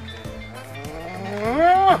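A man's long vocal exclamation that rises steadily in pitch for about a second and cuts off sharply near the end, over background music.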